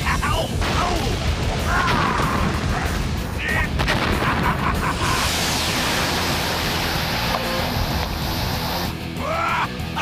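Fight-scene soundtrack of a live-action giant-robot TV battle: background music with impact effects and a few short vocal cries in the first half, then a long rushing blast effect from about halfway in that lasts some four seconds.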